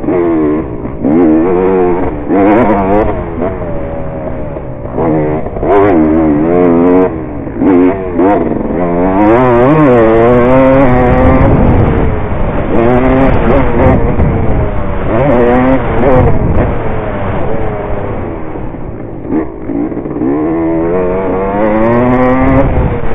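Dirt bike engine revving hard while being ridden around a motocross track. Its pitch climbs and drops over and over as the throttle is opened and shut and the gears change.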